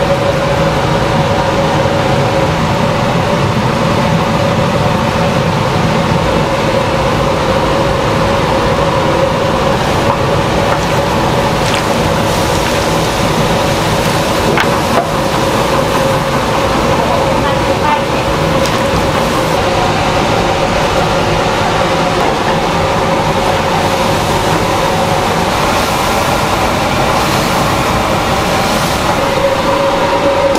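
Steady roar and constant hum of a commercial kitchen's large gas-fired cooking kettle while sliced zucchini is stir-fried in it, with a few faint clicks from the stirring paddle around the middle.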